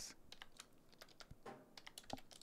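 Faint typing on a computer keyboard: a quick, uneven run of keystrokes.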